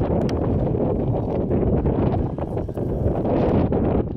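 Wind buffeting the microphone, a steady low rumble, with a few faint clicks.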